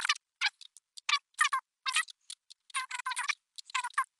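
Computer keyboard keys and mouse buttons clicking in a quick, irregular run of short clicks, some in tight clusters, as text is copied and pasted.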